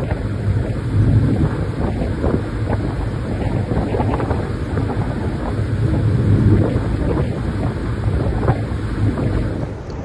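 A tender boat under way: wind buffeting the microphone over the steady rush of the boat's wake and engine.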